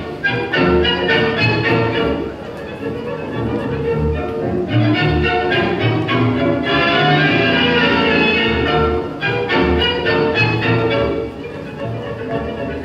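Recorded tango orchestra music with violins over a marked, pulsing beat, turning to a smoother sustained string passage in the middle.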